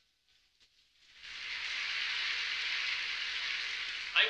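Audience applause in a large hall, rising about a second in and holding steady.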